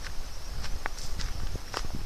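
Footsteps on a dry forest floor of pine needles and fallen twigs, with irregular crunches and small cracks a few times a second.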